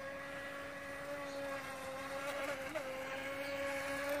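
Feilun FT012 RC racing boat's brushless motor running at speed: a steady whine that wavers briefly about two and a half seconds in.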